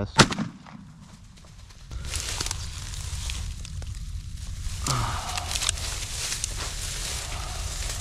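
A single gunshot a moment in, from a long gun fired at close range at a nutria. It is followed, from about two seconds in, by the crackly rustling of dry grass and vines as hands reach in and pull out the dead animal.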